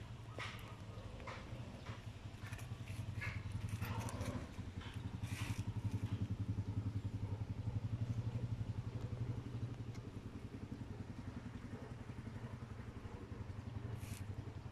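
A running engine's low, steady pulsing hum that grows louder about five seconds in, with a few light clicks and knocks in the first seconds.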